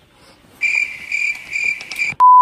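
Cricket chirping: a loud, high trill in three or four pulses, starting about half a second in.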